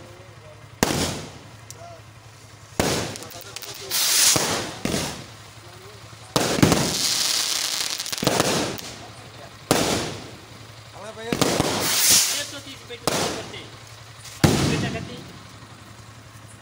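Fireworks going off: a series of about ten bursts, some sharp bangs and some rising hisses, each fading off in a crackling tail, with one longer hiss lasting over a second about six seconds in.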